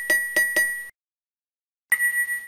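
Bright, glassy chime sound effect accompanying slide text animations: a quick run of three or four clinking dings in under a second, each ringing briefly, then one more ding near the end.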